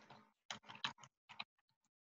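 Faint computer keyboard keystrokes: about half a dozen quick key clicks in a second as a word is typed, then a few fainter clicks.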